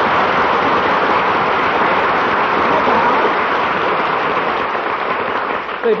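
Studio audience laughing and applauding after a joke, a steady loud wash that eases off slightly near the end, heard on an old radio broadcast recording.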